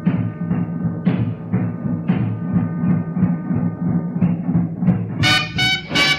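Big-band swing record playing: drums and rhythm section keep a steady beat, and about five seconds in the brass section comes in loud.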